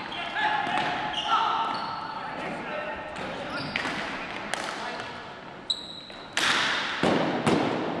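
Ball hockey in a gym: sticks clacking on the ball and the hard floor, echoing in the hall, with players shouting. Two loud sharp cracks come in the second half, the loudest sounds, from hard hits of the ball.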